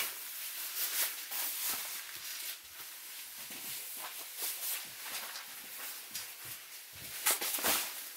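Rustling and swishing of nylon sleeping bags being spread out and handled, with a louder swish about seven seconds in.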